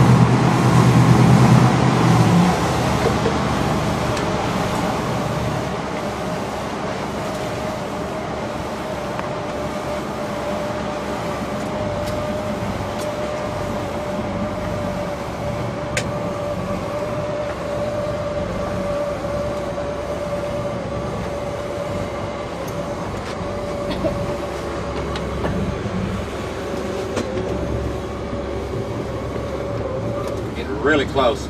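A motorboat's engines run at steady cruising speed: a constant drone with a steady whine, over the rush of water and wind. A heavier low rumble in the first couple of seconds drops away, and the drone then holds steady.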